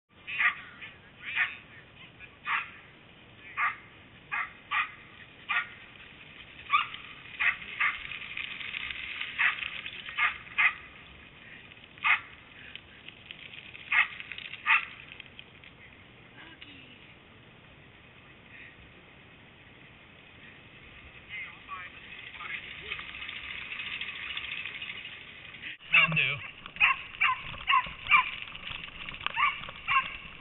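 Dogs barking in short, sharp yips, about one a second at first, then a quieter stretch, then a quick run of yips near the end.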